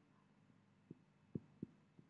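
Near silence, broken by three faint, short, low knocks about a second in: a marker tapping the whiteboard as short strokes of a battery symbol are drawn.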